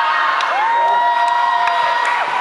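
Audience of students cheering and screaming, with several long, high-pitched shouts held for a second or more, one sliding up about half a second in.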